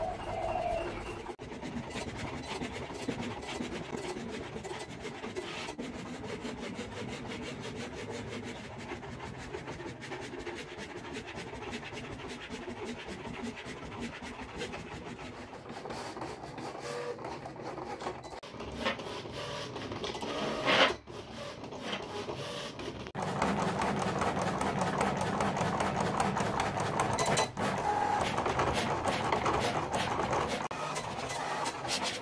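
Cricut Explore 3 cutting machine running, its motors and rollers moving a sheet of removable smart vinyl through with a steady rasping sound and fast fine ticks. A sharp knock comes about 21 seconds in, and the machine runs louder over the last seven seconds.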